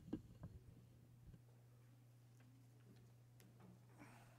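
Faint clicks of a computer keyboard being typed on, a quick cluster in the first second and a half and a few scattered ticks later, over a steady low electrical hum.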